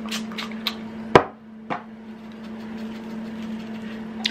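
A few short hissing puffs from a pump oil mister sprayed onto a salmon fillet. A sharp knock follows about a second in, with a lighter knock just after, as the sprayer is set down on the counter. A steady low hum runs underneath.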